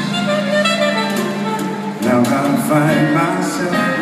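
Live jazz band playing an instrumental passage, a saxophone carrying the melody over piano, double bass and drums.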